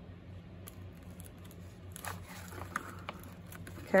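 Faint rustling and a few soft clicks of paper and card being handled, over a steady low hum.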